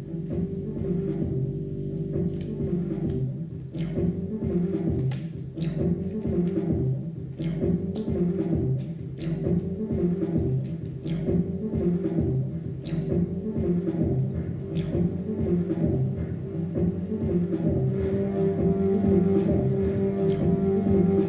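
Improvised electronic music: layered synthesizer sounds looped through a homemade analog looper that records onto magnetic discs played on a modified turntable. A low, pulsing drone of sustained tones runs under scattered clicks and several short falling high chirps, and a higher tone layer comes in near the end.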